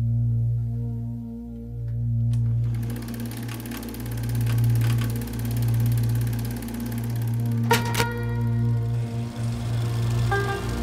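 Calm ambient music with long sustained tones, joined about three seconds in by the fast, even clatter of a home movie projector running its film. Two sharp clicks come near the end.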